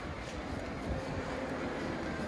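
Steady low rumble and hiss of outdoor background noise, with no distinct event standing out.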